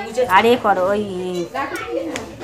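High-pitched voices talking and calling out, a child's among them, with no clear words.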